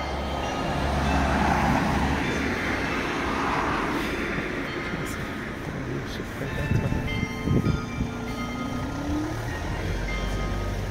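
Street traffic: a passing car's tyre and engine noise swells and fades over the first few seconds. Near the end a vehicle's engine note rises in pitch.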